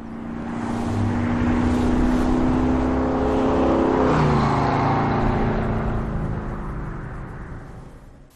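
A long whooshing transition sound effect: a noisy swell that builds, holds a steady hum which drops in pitch about halfway through, then fades away.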